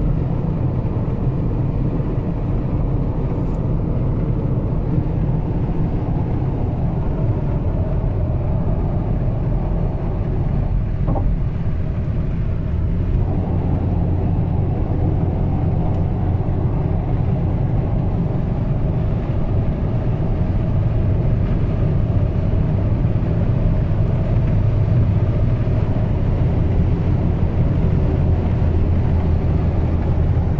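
Inside the cabin of a Volvo XC40 D3 at motorway speed: a steady low drone of its 2.0-litre four-cylinder turbodiesel mixed with tyre and wind noise. It grows a little louder as the car accelerates from about 135 to 155 km/h.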